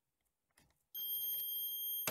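Canon BJC-70 bubble jet printer sounding a steady, high-pitched electronic error alarm that starts suddenly about a second in, after a few faint clicks. The alarm follows the print head unit being popped out while the printer is switched on.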